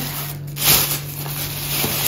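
Thin plastic grocery bag crinkling and rustling as it is handled, over a steady low hum.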